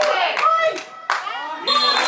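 Many voices, children's among them, shouting over one another around a football match, with scattered sharp handclaps. A high steady whistle comes in near the end.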